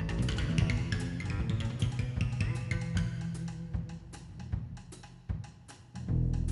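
Live acoustic jazz: double bass playing low notes with the drum kit accompanying, its stick and cymbal strikes sharp above the bass. The playing gets sparser and quieter over the last two seconds.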